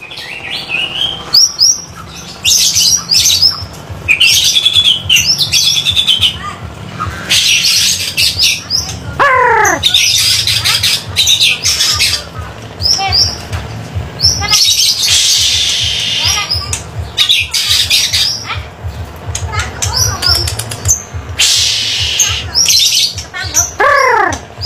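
Caged songbirds singing in full, continuous song: rapid, varied bursts of high chirps and trills, with a long falling whistle about nine seconds in and another near the end.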